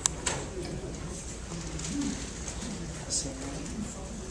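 Faint, low murmuring voice sounds in a hearing room, with two sharp clicks near the start.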